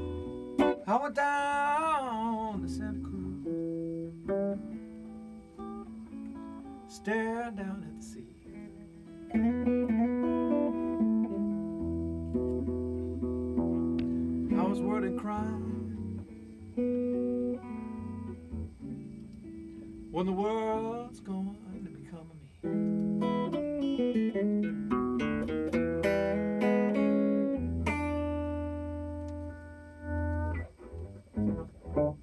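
Blues played live on a hollow-body electric guitar through an amp: single-note lines with bent notes over a repeating low bass-note pattern.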